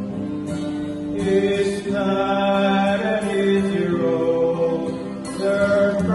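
A male vocal group singing a slow gospel song in harmony to acoustic guitar, with long held notes that swell louder about a second in.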